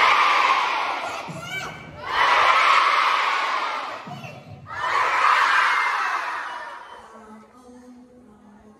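A hall full of schoolchildren shouting a cheer three times, each cheer a loud swell of about two seconds that trails off. A short call from a single voice comes just before the second and third cheers, and the last cheer fades out near the end.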